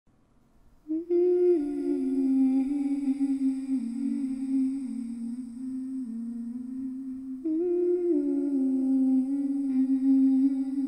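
Intro music: a slow, wordless hummed melody, starting about a second in and beginning a second phrase near the end.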